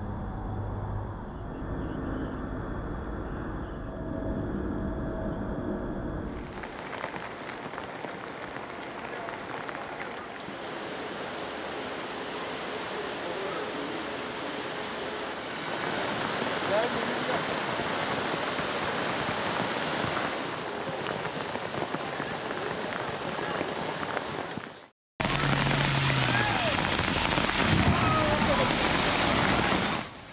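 Heavy rain pouring onto flooded streets, a dense steady hiss, with a low rumble under it in the first few seconds. The sound drops out for a moment a few seconds before the end, then the rain comes back louder.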